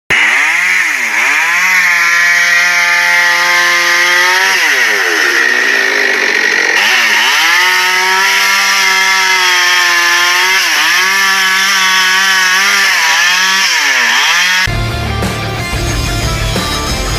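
DEKTON cordless battery chainsaw cutting through a thick log: a steady electric-motor whine that sags in pitch several times as the chain bites into the wood, then recovers. Near the end the sawing cuts off and rock music starts.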